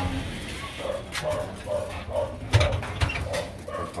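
Domestic pigeons cooing in their breeding cages, a short low call repeating every fraction of a second, with a few sharp knocks.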